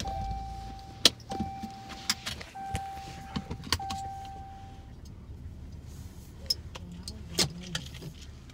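A car's warning chime: a steady mid-pitched beep sounding four times, each about a second long, over a low idling rumble inside the car. Sharp clicks cut in several times, the loudest about a second in and another near the end.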